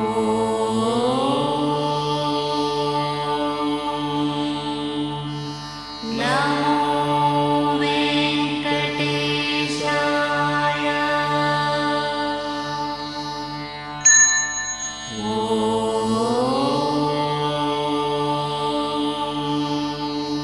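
Hindu Vedic mantras chanted in long, held phrases over a steady low drone, each new phrase sliding up in pitch at its start. About fourteen seconds in, one sharp metallic strike rings briefly.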